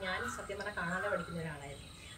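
A woman speaking, over a steady high-pitched drone of crickets or other insects.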